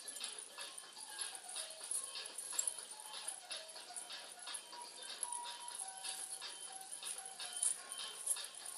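Metal coins on a belly-dance hip scarf jingling in quick, irregular shakes as a child dances, over faint background music.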